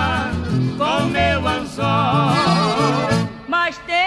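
Music: a country-style song between sung lines, with a melody wavering in strong vibrato over a stepping bass line.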